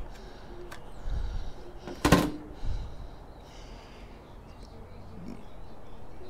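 A sharp click about two seconds in, amid light handling noise: the spring clips of a laptop-style SO-DIMM memory slot letting go and the Kingston RAM stick popping up, before it is pulled out of the slot.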